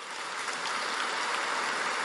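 Audience applauding, swelling quickly at the start and then holding steady.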